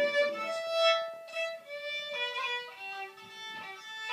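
A solo fiddle plays a slow melody in long held notes, stepping down in pitch in the second half.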